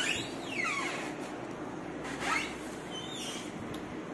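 Single-door refrigerator door pulled open by its handle, with a squeak that falls in pitch as it starts to open and another rising squeak about two seconds in, over a steady low hum.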